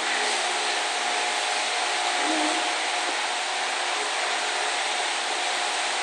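Steady rushing noise with a faint hum, like an electric wall fan running in the room.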